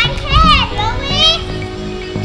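A young child's excited high-pitched squeals, two wordless rising-and-falling cries about half a second and a second in, over background music.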